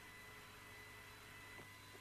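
Near silence: a faint, steady hum and hiss from the archival commentary recording in a gap between radio calls.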